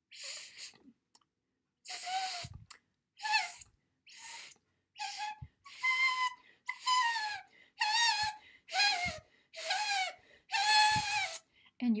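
A strip of paper stretched taut and blown across at the lips, like a blade-of-grass whistle: about ten short blows, each a wavering, whistle-like tone over breathy hiss. The paper's straight edge splits the air stream and sets the paper vibrating rapidly, the same air-splitter action that makes woodwind instruments sound.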